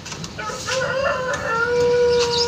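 A bird call: a wavering opening about half a second in that settles into one long held note.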